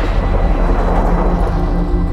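Cinematic trailer sound design: a loud, deep, noisy rumble carrying on from a heavy hit just before, with sustained low music tones rising through it toward the end.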